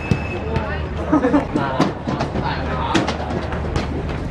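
Players' shouts and voices on an open football pitch, with scattered sharp knocks and a steady low rumble underneath.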